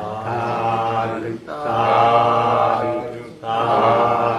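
A Buddhist monk's male voice chanting Pali verses on a steady reciting pitch, in three long held phrases.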